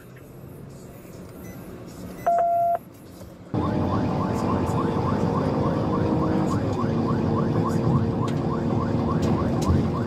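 Police cruiser's siren in a fast yelp, about four rising sweeps a second, starting suddenly a little past a third of the way in, over the cruiser's engine and road noise. Before it there is only road noise and one short electronic beep about two seconds in.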